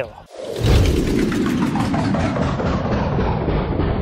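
Logo-intro sound effect: a loud, dense rumble that starts about half a second in and holds steady, its treble steadily dulling as it goes.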